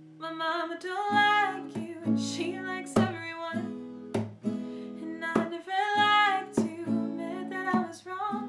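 A woman singing a slow melody over her own acoustic guitar, an Ibanez with a capo, strummed in a steady pattern with a sharp accented stroke about every second and a quarter.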